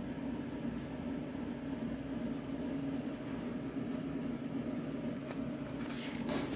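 Steady low hum with an even background noise, no distinct events.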